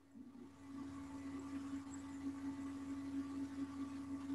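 A steady low hum on one pitch that fades in over about the first second and then holds.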